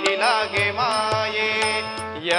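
Live Marathi devotional stage song: a singer's voice gliding through ornamented phrases over a steady drone and regular hand-drum strokes.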